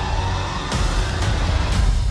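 Film trailer music under the title card: a deep bass bed with heavy percussive hits about every half second, building to its loudest just before it cuts off.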